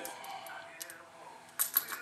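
Light metallic clicks of .357 Magnum cartridges being pushed out of a Smith & Wesson Model 19 revolver's swung-out cylinder and handled while it is unloaded. There is a single click about a second in, then a quick run of clicks near the end.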